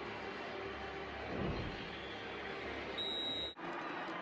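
Steady stadium crowd noise from a football broadcast, swelling briefly about a second and a half in. Near the end a short high-pitched tone sounds for about half a second, then the sound cuts off abruptly at an edit.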